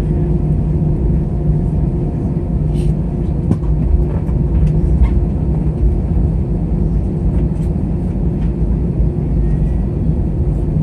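Cabin noise of an Airbus A320 taxiing at low engine power: a steady low rumble with a constant hum from the engines and the rolling wheels, with a few faint clicks.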